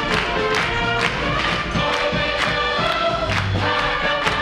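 A musical-theatre chorus singing together with instrumental accompaniment, over a steady beat about twice a second.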